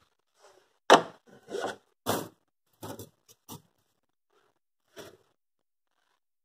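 A cardboard piston-ring box being handled and opened and the rings lifted out of it: a run of short scrapes and rustles, the loudest about a second in.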